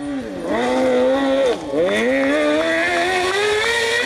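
Kart-cross buggy's engine revving hard on a gravel stage. Its pitch climbs, dips sharply once about a second and a half in, then climbs steadily again.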